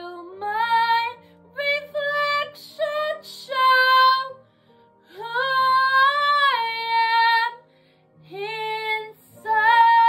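A woman singing solo over a quiet backing track, in short phrases and then long held notes. One long note swoops up to start, about five seconds in, and another sustained note begins near the end.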